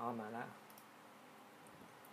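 A short spoken remark, then a few faint, brief clicks of a computer mouse as a web page is clicked through.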